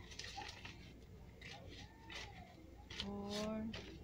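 Paper banknotes being handled and counted by hand, crinkling and flicking as they are sorted. A drawn-out spoken count word comes about three seconds in.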